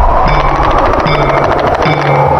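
Loud intro music: a dense, rapid drum roll with a short ringing tone sounding again about every 0.8 seconds.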